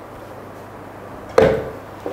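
A single knock about one and a half seconds in as the Vitamix blender jar is set down onto its motor base; otherwise quiet room tone.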